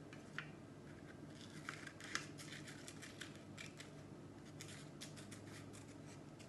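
Small safety scissors cutting a piece of paper: a run of short, faint snips, coming in clusters as the shape is cut out.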